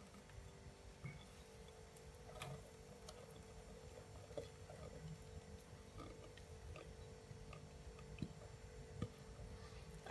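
Near silence with faint room hum and a few scattered soft ticks, from a silicone spatula tapping and scraping a glass mixing bowl as thick cake batter is poured into a round cake tin.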